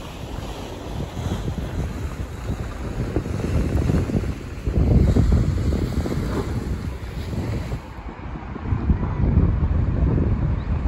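Wind buffeting the phone's microphone by the sea, a gusty rumble that blows hardest about halfway through, with the wash of sea and surf underneath. It dips briefly near the end, then gusts again.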